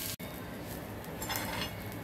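Metal spatula stirring and scraping sliced onions, peanuts and grated coconut as they roast in a little oil in a pan, for a masala paste. Quiet and steady, after a brief dropout just after the start.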